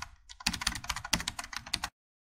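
Keyboard typing sound effect: a rapid, uneven run of key clicks that stops shortly before the end, laid over text being typed onto the screen.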